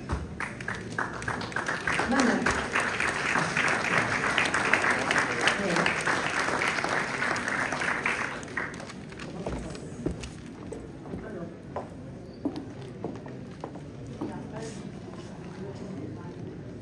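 Audience applauding: dense clapping for about eight seconds that then thins out to a few scattered claps, with voices talking underneath.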